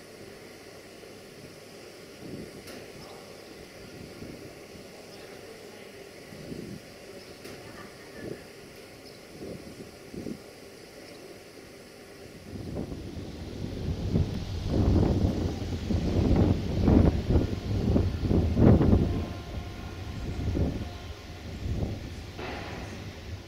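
Bombardier Traxx electric locomotive hauling a passenger train into the station. A faint rumble with a few light knocks for the first half, then from about halfway a loud low rumble with uneven surges as the train draws near.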